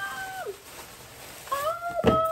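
A woman's voice singing wordless held notes: one long steady note that drops away about half a second in, then a new note gliding up near the end.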